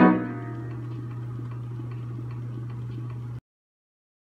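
1924 Knabe Ampico reproducing piano sounding the final chord of a roll, which dies away quickly. A steady low hum with faint ticking from the player mechanism follows, then the sound cuts off abruptly shortly before the end.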